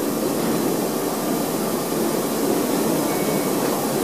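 Kuraki KBT-15DXA table-type horizontal boring machine running with its rotary table, a steady, even mechanical noise.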